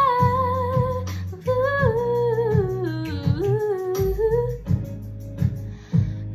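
Female voice singing over an instrumental backing with a steady bass pulse: a held note, then a long run that winds downward. Near the end the voice stops and the accompaniment plays on alone.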